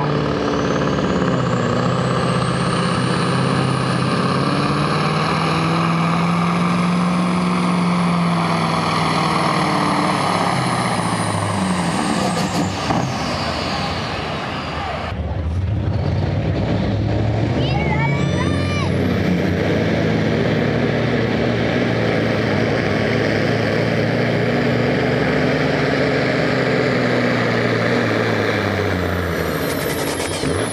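Diesel semi trucks at full load pulling a weight sled, each with a high turbo whine. The first pull's whine climbs and holds, then winds down about twelve seconds in. After a short lull, a second truck's whine climbs again from about eighteen seconds and falls off near the end.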